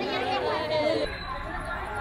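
Several people chatting close by, voices overlapping; about a second in the sound cuts to fainter crowd chatter over a low rumble.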